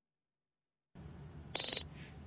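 A short, high-pitched electronic alert beep from a trading platform, about a second and a half in, signalling that an order closing the trade has been filled.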